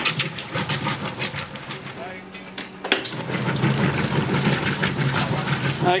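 Whirlpool Ultimate Care II top-load washer agitating a load in water: a steady motor hum with water churning and sloshing as the agitator and auger work the clothes. It is running the way it should, its agitator cam dogs newly replaced. A single sharp click sounds about halfway through.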